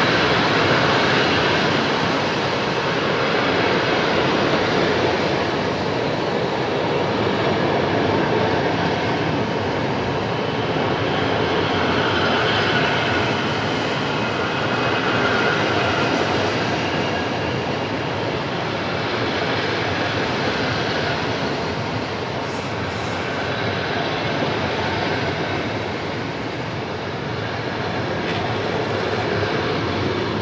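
PKP Intercity passenger carriages rolling past a platform, with a steady, continuous noise of their wheels running on the rails.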